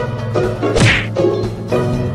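Cartoon hit sound effect a little under a second in: a quick falling swish ending in a thud. Background music plays underneath.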